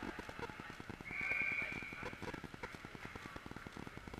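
Ice hockey rink noise: a steady patter of clicks and taps with voices in the background. A brief, high, steady tone about a second in is the loudest thing.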